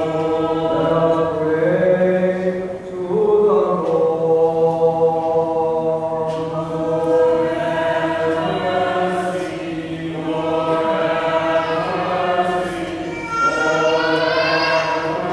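Voices singing slow liturgical chant in long, held melodic phrases over a steady low held note, with short breaks between phrases.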